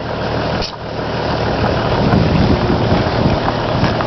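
A car driving slowly along a dirt track: a steady engine with rumbling road and wind noise, growing slightly louder, heard from someone riding on the outside of the car.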